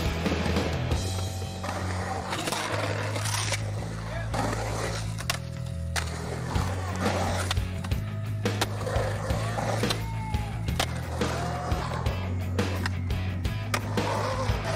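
Skateboard wheels rolling and carving on concrete in a bowl, with repeated sharp knocks of the board, over a music track with a steady bass line.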